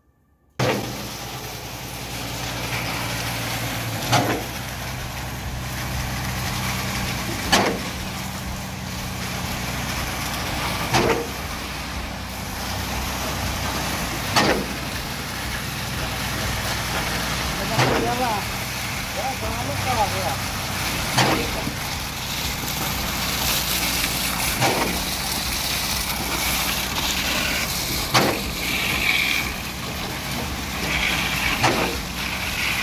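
Concrete pump running steadily under engine load. A sharp knock comes about every three and a half seconds as the pump changes stroke.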